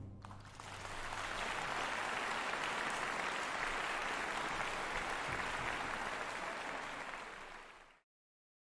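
Audience applauding in a concert hall just after an orchestra's last chord dies away. The clapping builds quickly, holds steady, then fades out near the end.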